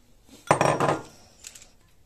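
A ceramic bowl clattering loudly for about half a second, about half a second in, as it is handled and put aside, with a few faint light clicks after.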